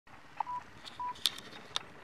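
Two short, steady electronic beeps about half a second apart, among a few sharp clicks.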